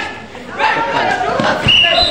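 Players and spectators shouting during a basketball game, with a basketball bouncing on the court as it is dribbled, a few bounces coming about one and a half seconds in.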